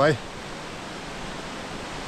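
A steady, even rushing noise.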